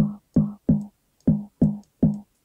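The tonal layer of a snare drum sample, split off by Steinberg Backbone's decompose and soloed, triggered five times in an uneven rhythm: short, tom-like sine-wave pops at one low pitch, each dying away quickly.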